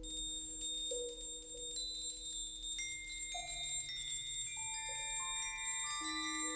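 Contemporary percussion ensemble music. A dense shimmer of high metal chimes sets in at once over a low held tone. From about three seconds in, sustained bell-like notes enter one after another, stacking into a chord.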